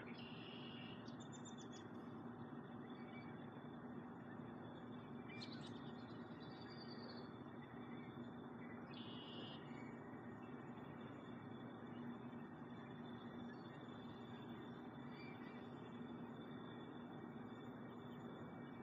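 Faint outdoor background: a few short bird chirps, near the start, about five seconds in and about nine seconds in, over a low steady background noise.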